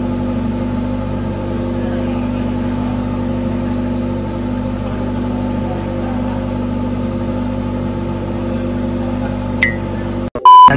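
An engine running at a steady idle: an even, unchanging hum with no rise or fall in pitch.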